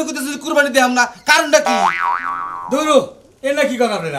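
Men talking in Bengali, with a cartoon 'boing' comedy sound effect about two seconds in: a springy tone whose pitch wobbles up and down twice, lasting about a second.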